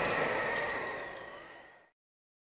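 A sudden crash with a ringing tone that fades away over about two seconds, then cuts off to dead silence.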